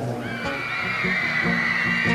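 Live band playing between sung lines: a long, high, slightly wavering note held over steady low backing notes and light drum hits.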